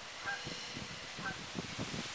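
A couple of faint, short animal calls, one about a third of a second in and another about a second later, over a quiet outdoor background.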